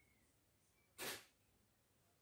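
Near silence, broken once about a second in by a short, sharp exhale, a brief puff of breath.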